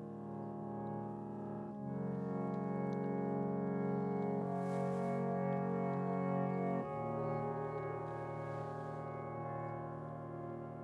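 Instrumental music: held keyboard chords, each sustained for several seconds, changing about two seconds in and again about seven seconds in.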